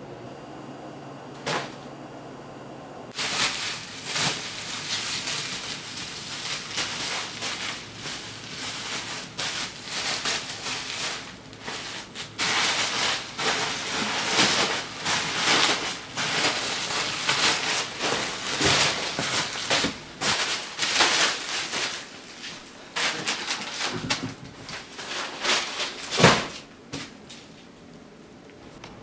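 Plastic packing material and bubble wrap being handled, with dense irregular crinkling and crackling from about three seconds in, and a loud thump near the end.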